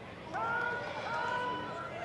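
Several high-pitched voices overlap in long, drawn-out shouts over the steady background noise of a football stadium.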